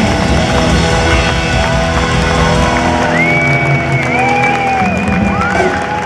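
Live blues-rock band playing at arena volume, heard from the audience: drums, bass and keyboards under an electric guitar lead. From about three seconds in, long high guitar notes are bent up and held with vibrato, and the low end of the band thins out near the end as the song closes.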